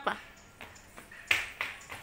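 The end of an adult's spoken word, then a short, sharp noisy sound about a second and a half in, followed by a couple of fainter ones.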